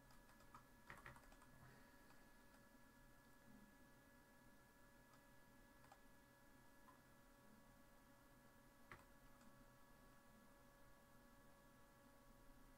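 Near silence with a few faint computer keyboard and mouse clicks: a short cluster about a second in, then single clicks about halfway and near the end, over a faint steady hum.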